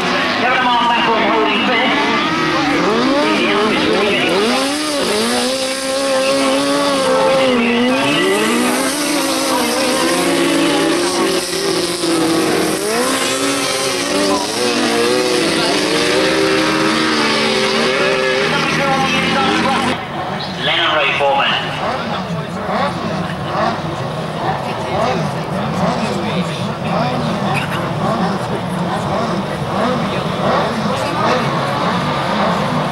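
Several grasstrack sidecar outfits' motorcycle engines racing, their pitches rising and falling together as they accelerate and shut off through the bends. About two-thirds of the way through the sound cuts abruptly to a quieter, more distant mix.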